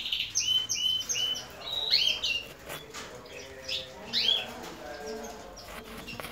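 Canaries calling in the breeding room: repeated short chirps, several of them glides in pitch, coming at irregular intervals.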